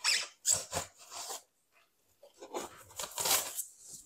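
Small serrated knife sawing through a 30 mm expanded-polystyrene (styrofoam) board in short strokes: a quick run of strokes in the first second and a half, then more after a pause of about a second.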